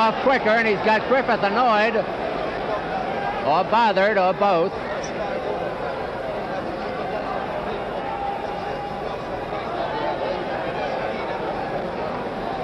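Murmur of an arena crowd at ringside, heard as a steady even noise through old broadcast audio. A man's voice speaks over it for the first couple of seconds and again briefly around four seconds in.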